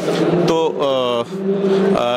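A man speaking Hindi close to a handheld microphone, breaking off after one word and holding a single steady-pitched sound through the second half.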